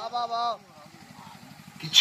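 A male Birha singer's voice ends a sung line in the first half second. Through the pause that follows a faint, low, evenly pulsing engine drone is heard, and his voice comes back just before the end.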